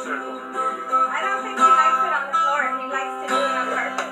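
A song playing back from a video through small computer speakers: a voice singing over guitar, thin and without bass.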